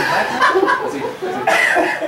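Voices of people close by: short non-word vocal sounds, like a cough or a chuckle, mixed with indistinct talk.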